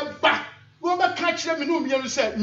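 A man's voice preaching emphatically into a hand-held microphone: a short outburst just after the start, then a longer run of speech from a little before the middle.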